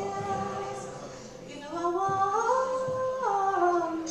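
A woman singing long held notes in a folk duo, her voice stepping up in pitch about two seconds in, holding, then falling back near the end, over a soft acoustic guitar and concertina accompaniment.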